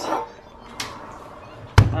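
Knocks of handling at a kitchen hob: a light click, a fainter knock, then a heavy, deep thud just before the end.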